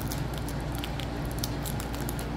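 Faint crinkling and small ticks of a trading-card booster pack wrapper being pulled at as it resists tearing open, over a steady low hum.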